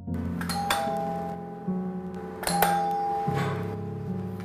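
Doorbell chiming twice, a two-note ding-dong each time, about two seconds apart, over background music.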